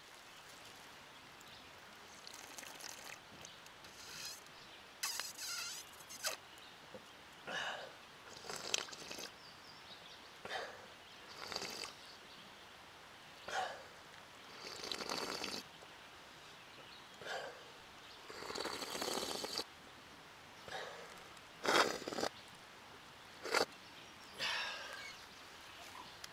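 About a dozen short slurping sips of water drawn from the surface of a tarp, spaced irregularly a second or two apart.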